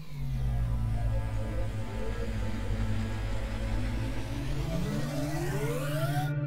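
Cinematic transition sound effect under an animated title card: a steady deep rumbling drone, with a tone rising steadily in pitch over the last second and a half as a build-up.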